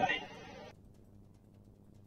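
A man's speech trailing off at the start, then faint room hum that cuts off under a second in, leaving near silence.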